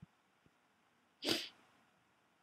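A faint click at the very start, then one short, sharp breathy burst about a second in that fades within a third of a second.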